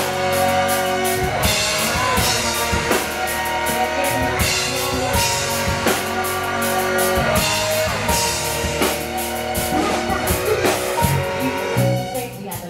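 Live rock band playing an instrumental passage: electric guitar and bass guitar holding sustained notes over a drum kit keeping a steady beat.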